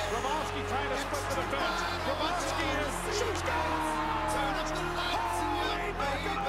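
Hip-hop song playing: a voice held on gliding notes over a steady, heavy bass line.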